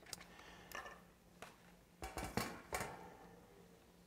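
Light metallic clicks and clatter as a propane tank-top radiant heater head, with its wire guard and reflector, is handled and laid down on a wooden table: a few scattered knocks, the loudest cluster about two to three seconds in.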